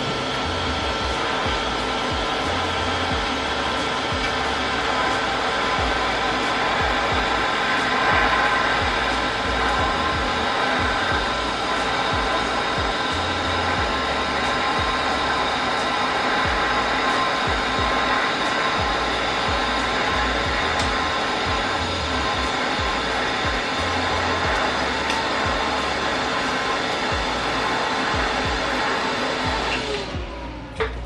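TIG welding arc at about 90 amps, sealing a steel plate to a cast cylinder head: a steady hiss and buzz with faint crackles, cutting off right at the end.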